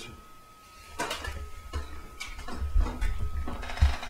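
Handling noise: scattered clicks and knocks from about a second in, with low rumble from the camera being moved near the end.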